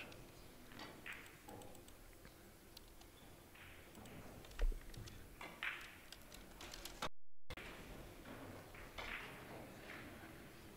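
Sharp clicks of a cue tip on the ball and of carom billiard balls striking each other during a three-cushion shot, with one louder knock about halfway through, against a faint room background.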